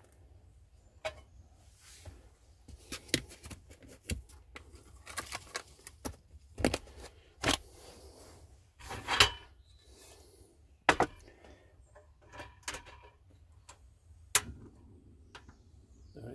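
Scattered clicks, knocks and scrapes from a plastic butter tub and a non-stick frying pan being handled. Near the end a sharp click from the portable gas stove's automatic ignition, and the burner lights with a steady hiss.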